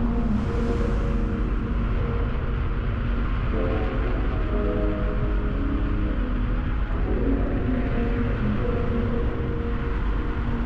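Background music of sustained chords that change every few seconds, over a steady low rumble.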